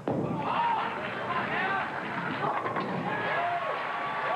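A bowling ball landing on the lane at release and rolling, then a crash of pins about two and a half seconds in, with spectators calling out over it.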